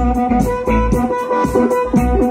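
Live blues band playing an instrumental passage: a harmonica played into a hand-cupped vocal microphone, with long held notes, over electric guitar, bass, keyboard and a steady drum beat.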